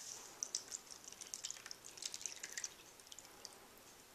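Vinegar and hydrogen peroxide mix poured from a glass measuring jug into a plastic tub of salt: a faint trickle of small splashes and drips that dies away about three and a half seconds in.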